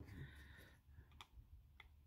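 Near silence, with a few faint clicks from a metal coil bracelet and a plastic pocket magnifier being handled, about a second in and again near the end.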